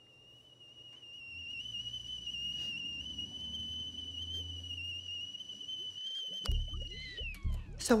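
A high, steady whistle-like tone in a horror film's score, held for about seven seconds over a low drone that swells and fades. Near the end the tone slides downward as a low pulsing beat comes in.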